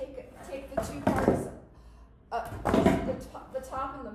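Wooden mold boards and a cast plaster mold knocked, slid and set down on a workbench as the boards come off a two-part plaster mold. There are two scraping, knocking bursts, one about a second in and a louder one near three seconds.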